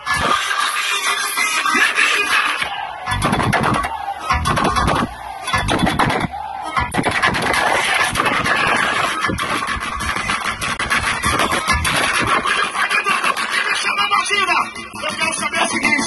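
Loud dance music played through a paredão sound-system rig. The bass is thin for the first couple of seconds, then comes in heavier.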